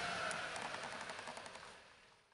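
The 1996 Toyota Camry's 2.2-litre 5S-FE four-cylinder engine running after its head gasket replacement, a steady rushing noise with faint rapid ticks, fading out near the end.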